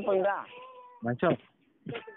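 A person's voice over a phone call, in short utterances with sliding pitch and one briefly held note.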